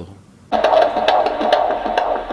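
Handheld fetal Doppler monitor on a pregnant woman's belly picking up the baby's heartbeat: a fast, regular pulsing beat from the device's speaker, starting about half a second in.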